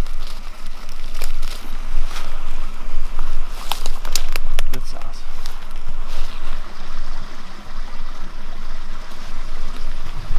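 Leafy brush rustling, with sharp snaps and crackles of twigs, as someone pushes a hand and body through thick undergrowth and steps through dry leaf litter, over a steady low rumble.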